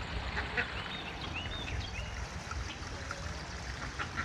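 Birds calling in the background, a scatter of short chirps and calls, over a steady low rumble.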